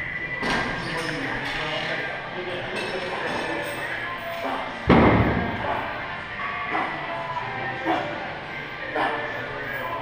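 Gym background music and voices in a large room, with a loud thud about five seconds in and a few softer knocks from the weight machines.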